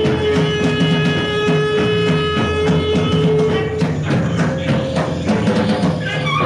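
Live post-punk/no wave band playing: a long held note ends about four seconds in, over a repeating bass and drum pattern.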